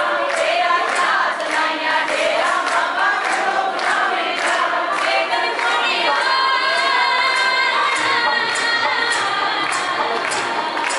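Devotional bhajan sung by a group of voices with musical accompaniment, kept in time by rhythmic handclapping about twice a second. From about halfway through, long notes are held steady.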